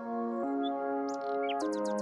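Background music of soft sustained chords that change twice, with high bird-like chirps layered over it in the second half.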